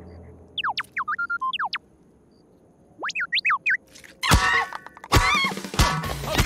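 Cartoon sound effects: two quick runs of springy, whistle-like glides sweeping up and down in pitch, then three loud, sharp impacts with a ringing tail in the last two seconds.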